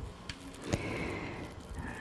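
Faint rustling of clear plastic wrap around a buttercream-filled piping bag as it is twisted, with a few small sharp clicks from scissors being brought to cut the bag's end.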